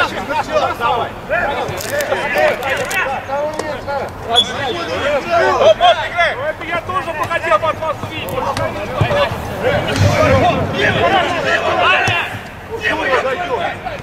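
Indistinct, overlapping voices of footballers and touchline onlookers calling out and talking during play.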